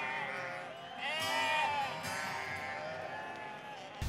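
Sheep bleating, about three calls, over background music.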